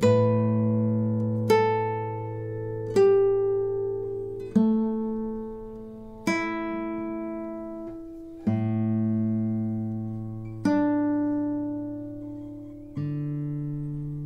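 Cordoba 45 Limited nylon-string classical guitar played slowly: eight plucked notes and chords, one every one and a half to two seconds, each left to ring and fade, the last one held near the end.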